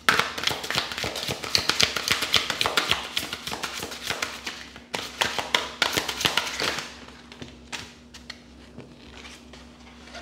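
Tarot deck shuffled by hand: a rapid, papery flutter of card edges for about seven seconds. After that come a few light taps as cards are dealt onto the cloth-covered table.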